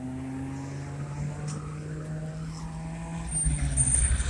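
Cars passing on a road: the hum of a car engine, slowly falling in pitch as it drives away, then a louder low rumble building near the end as another vehicle approaches.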